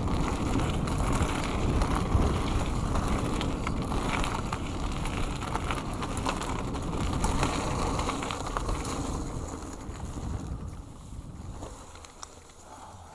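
Wind buffeting an action camera's microphone on a mountain bike riding fast down a dirt singletrack, with tyre noise over the dirt and frequent short clicks and rattles from the bike. The rush fades away over the last couple of seconds.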